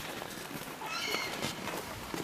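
A short, high-pitched animal call about a second in, over faint rustling.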